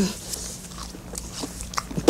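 A person chewing a bite of pickle, with a few small, sharp crunching clicks spread through the chewing.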